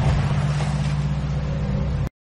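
Intro sound design: a rushing whoosh of noise over a steady low drone that carries on from the intro music.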